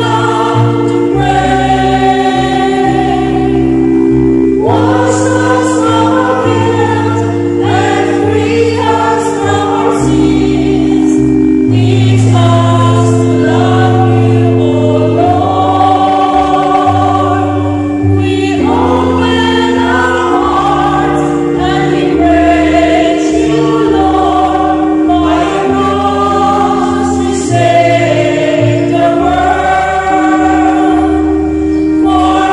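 A choir singing a slow Lenten entrance hymn in several parts over sustained accompaniment chords, the low notes held and changing every second or two.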